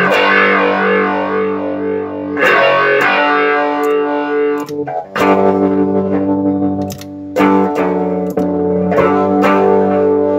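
Electric guitar played through a Line 6 HX Effects processor: several sustained chords are struck in turn, ringing between attacks. The unit is passing signal again now that its broken input and output solder joints have been redone.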